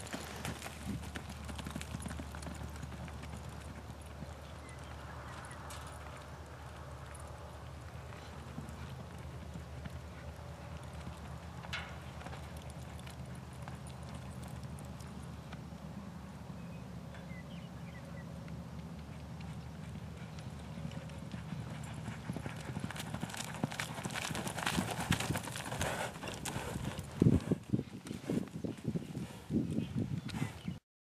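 A horse's hoofbeats on soft arena dirt as it runs a barrel pattern, over a steady low hum. The hoofbeats grow louder and more frequent in the last several seconds.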